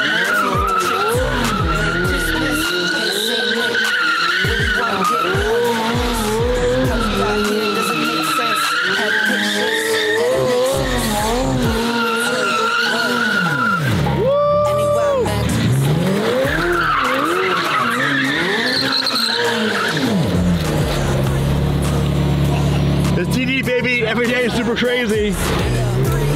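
McLaren Senna's twin-turbo V8 revving up and down while it spins donuts, with the rear tyres squealing at a wavering pitch. About two-thirds of the way through, the engine holds one steady pitch for a moment, and a low, steady rumble follows near the end.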